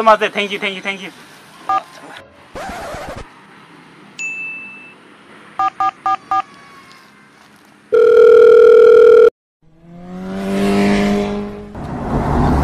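Mobile phone keypad tones: a single beep, then four short two-tone key presses as a number is dialled. A loud steady tone, the loudest sound here, follows, held for over a second before it cuts off suddenly. Near the end a swelling sound with a low hum rises and fades.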